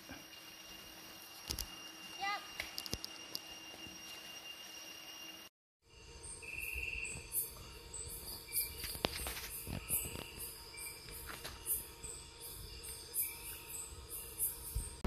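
Forest background sound, then after a cut, night insects chirping in many short, very high-pitched pulses repeating every half second or so, with an occasional buzzing call and a few sharp clicks.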